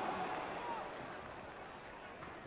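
Stadium crowd noise reacting to a scoring chance, loudest at the start and fading steadily.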